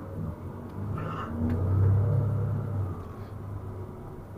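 Shuttle bus engine heard from inside the cabin as the bus pulls away and gets under way: a low rumble that swells about two seconds in, then eases off.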